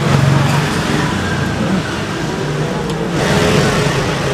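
Roadside traffic noise with a car engine running close by, a steady low hum.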